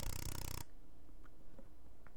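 Film soundtrack playing through the media player, cut off abruptly about half a second in as playback is stopped. After that there is only a faint hiss with a few faint clicks.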